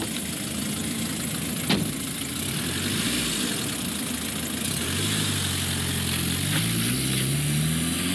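Small Ford hatchback's engine idling, with one sharp knock a little under two seconds in. Over the last few seconds the engine note rises steadily as the car pulls away.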